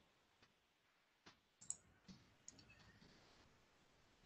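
Near silence on a video-call line, with a few faint, short clicks scattered through the middle of the pause.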